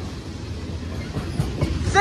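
Freight train tank cars rolling past at close range: a steady low rumble of steel wheels on the rails, with a few knocks in the second half.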